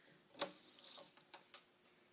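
Tape measure being hooked on the end of a rough-cut wooden plank and pulled out along it: one sharp click about half a second in, then a few light ticks.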